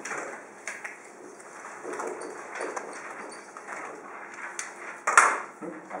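Classroom handling sounds: faint rustling and light knocks of things handled at the desks, with one sharper knock about five seconds in.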